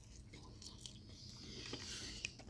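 Faint chewing of a mouthful of soft, saucy pasta and shrimp, with a few small wet mouth clicks over a low steady hum.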